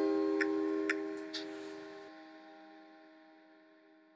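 The last guitar chord of the closing music ringing out and slowly dying away, with a few faint clicks in the first second and a half.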